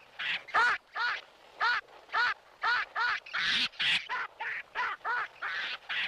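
Baboon calling over and over in short, arched screeches, two or three a second, while its hand is trapped in a hole.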